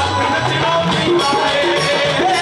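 Live amplified Punjabi song played loud, with singing over band accompaniment and a steady rhythmic beat.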